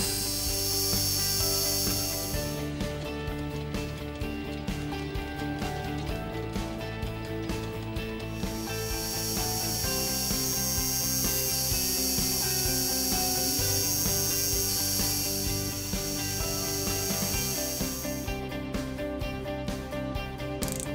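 Mini-lathe turning a carbon steel rod: the motor and spindle run steadily while the cutting tool takes chips off the work, with a bright high cutting hiss. The hiss stops about two seconds in, leaving scattered ticks, then returns for about ten seconds before stopping again near the end.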